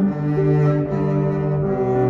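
Double bass played with a bow, a slow melody of long held notes that change pitch every half second or so, over grand piano accompaniment.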